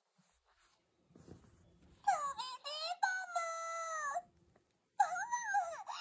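Delicious Party PreCure talking plush doll playing recorded high-pitched character voice lines through its small built-in speaker, set off by squeezing the doll. A soft handling rustle comes about a second in, one voice line follows at about two seconds, and another starts about five seconds in.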